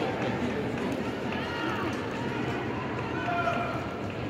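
Arena crowd hubbub: many voices talking and calling out at once, with no single speaker standing out.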